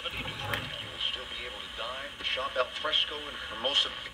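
AM broadcast news speech from a small transistor radio's speaker. The sound is thin and narrow, with steady hiss behind the voice, as the station is being tuned in with a tunable medium-wave loop antenna.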